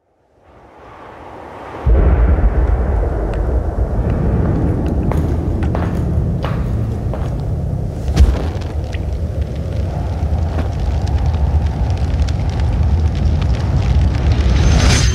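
A low, steady roar of fire with scattered crackles and pops. It swells in over the first two seconds, jumps in level, then holds, with a louder pop about eight seconds in.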